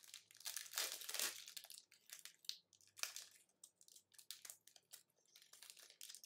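Foil trading-card pack wrapper being torn open and crinkled by hand, densest in the first second and a half, then scattered smaller crackles.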